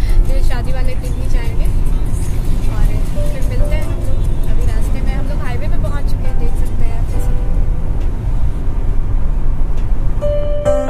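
A woman talking inside a moving car, over the steady low rumble of the car's cabin on the road.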